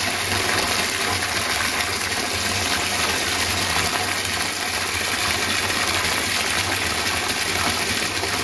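Bathtub tap running, a steady stream of water falling into a tub full of foam.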